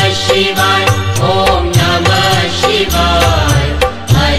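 Hindi devotional Shiva bhajan music: a chanted mantra sung over a steady percussion beat and low accompaniment.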